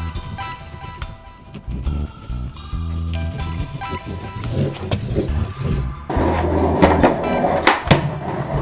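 Background music with a steady beat runs throughout. About six seconds in, a skateboard starts rolling and grinding across a freshly waxed plywood skate box with metal edging, with sharp clacks of the board.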